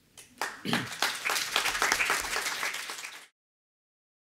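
Audience applauding, starting about half a second in and building quickly, then cut off suddenly a little over three seconds in.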